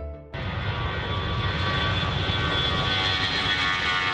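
Jet airliner's engines running at takeoff power on the runway: a steady rush of noise with a whine over it, starting suddenly a moment in.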